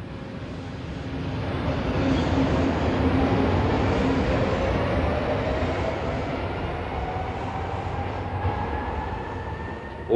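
A Brussels metro train running through the station. Its rumble builds over the first two or three seconds and then slowly fades, while a motor whine rises steadily in pitch as the train picks up speed.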